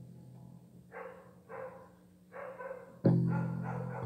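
Electric guitar played in fits and starts. A note rings down at the start, three short higher sounds follow, and about three seconds in a loud low chord is struck and left ringing.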